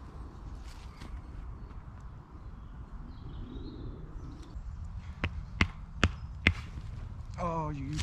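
Heavy canvas tent fabric handled and rustled over leaf litter, then four sharp knocks about half a second apart. A man's voice cuts in near the end.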